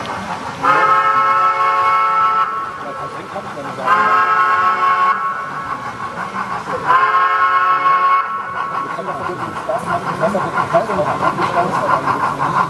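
Model steam locomotive whistle, blown three times, each blast lasting about one and a half to two seconds and coming about three seconds apart. Each blast rises slightly in pitch as it starts.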